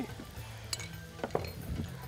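A few light clinks of a spoon against the pan while crushed black pepper is added to the cooked mince.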